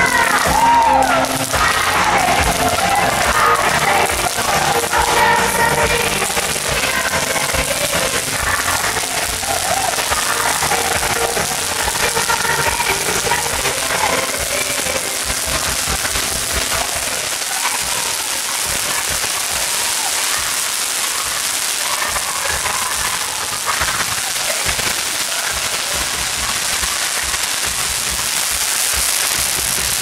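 A song with singing plays from loudspeakers, mixed with the steady crackling hiss of ground-fountain fireworks spraying sparks. The song is clearest in the first ten seconds or so; after that the hiss of the fountains is the main sound.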